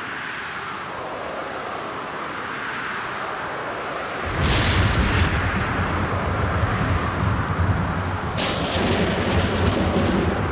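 Black/thrash metal recording: a noisy swell grows louder, then about four seconds in the full band comes in with heavy distorted guitars, bass and drums, cymbals crashing twice.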